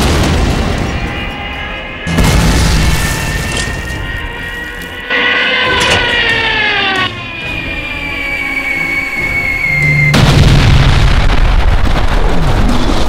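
Sound-effect bomb explosions over background music: a loud boom about two seconds in and another near ten seconds, with a high whistle sliding down in pitch in between.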